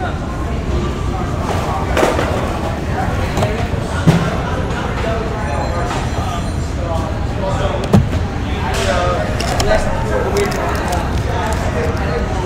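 Hands handling a cardboard trading-card box, with two sharp knocks about four and eight seconds in as it is set down or tapped, under a background of voices.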